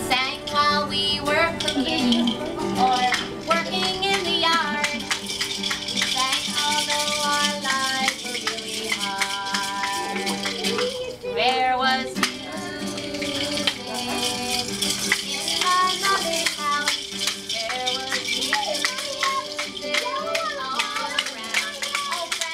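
Acoustic guitar playing a children's song, with a steady rhythmic rattle over it and young children's voices singing and calling out.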